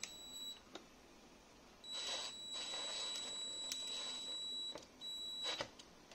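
A power screwdriver's motor whines in short runs as it drives screws with washers into a wooden strip. There is a brief run at the start, a longer one of nearly three seconds from about two seconds in, and a short one just before the end, each with a rasp from the screw biting into the wood.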